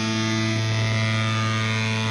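Rock song's final chord held steadily by the band's electric guitars, one unchanging chord ringing on.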